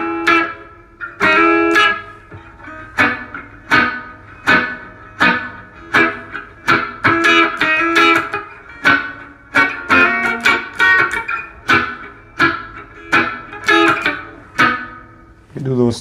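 Semi-hollow electric guitar playing reggae chords with short melodic fills: a series of plucked chords and single notes, each dying away quickly, about one or two a second.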